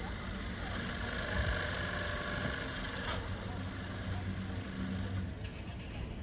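A car's engine idling steadily.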